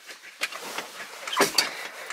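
A few short clicks and knocks from a Mazda Miata's gear shift lever being handled with the engine off, the sharpest about half a second and about a second and a half in.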